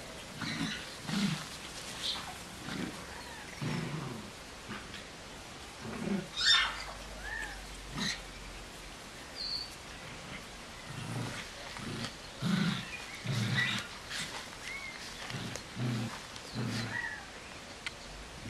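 Puppies growling in short, repeated bursts while play-wrestling, about one growl a second, with one louder, sharper yelp about six seconds in.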